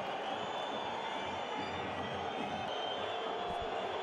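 Steady stadium crowd noise: a continuous wash of many spectators' voices, with no single loud event.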